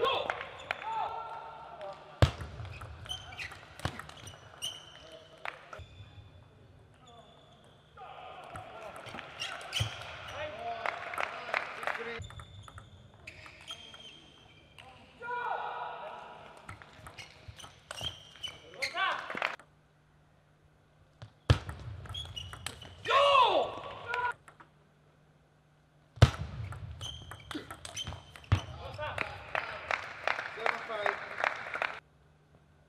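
Table tennis rallies: the ball's sharp clicks off rackets and the table come in quick runs, broken by pauses between points.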